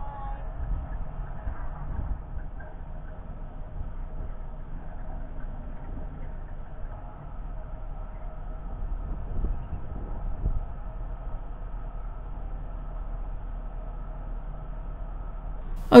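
Narrowboat's diesel engine running steadily at cruising speed, an even low hum with no change in pace.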